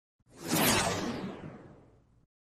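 Whoosh sound effect for an animated logo intro: it swells in over about half a second, then fades away over the next second and a half, its hiss growing duller as it dies.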